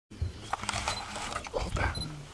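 African elephant feeding in bushes close by: a run of cracks and crackles as branches and leaves are broken off, with low rumbling sounds twice.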